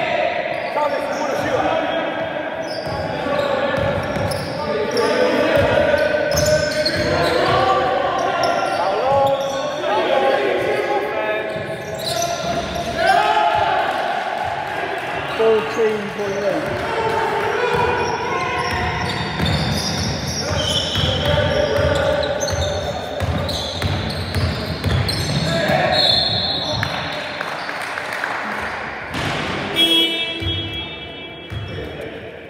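Basketball bouncing and players' footfalls on a wooden sports-hall floor during a game, with repeated short thuds, under continuous indistinct shouts and talk from players in the hall.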